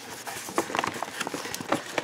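Paper gift bag being handled as it is opened: light paper rustling with a few scattered soft clicks.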